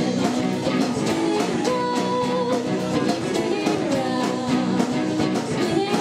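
Indie rock band playing live: electric and acoustic guitars over a steady drum beat, with a long held lead note about two seconds in.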